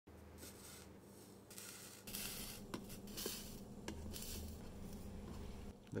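Gloved hands handling a copper-foiled glass box on a wooden board: soft rubbing and shuffling, a little louder from about two seconds in, with a couple of small clicks near the middle.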